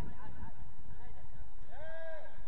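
Steady low rumble of wind on the microphone, with a player's short shouted call, rising then falling in pitch, near the end and a fainter shout just at the start.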